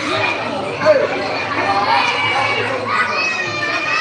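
Crowd of children talking and shouting at once in a large indoor room, a steady din of many overlapping voices.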